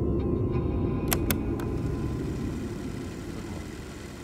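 A low, dark rumbling drone that fades out gradually, with two or three sharp clicks a little over a second in.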